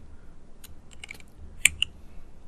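Typing on a computer keyboard: a handful of separate key clicks, the loudest about a second and a half in.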